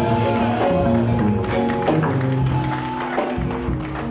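Live worship music from a band: sustained chords over a bass line, with percussion strikes, filling a large hall.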